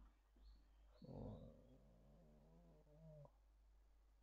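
Faint squeaks of a marker writing on a whiteboard, with a quiet, drawn-out hum of a voice from about a second in that stops suddenly a little after three seconds.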